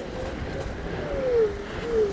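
Onewheel electric skateboard riding fast down a dirt trail: steady wind and tyre rumble, with a faint hub-motor whine that dips in pitch about a second in and again near the end.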